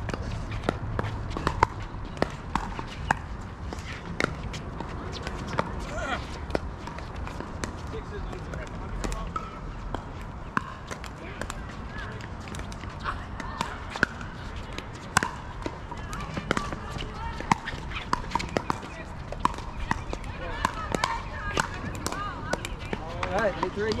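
Pickleball paddles hitting a plastic ball: a run of sharp, irregular pops through the rally, some from neighbouring courts, with faint distant voices behind.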